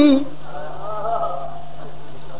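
A man's sung lament line dies away in the first moment, leaving faint, wavering voice-like sounds over a steady low hum.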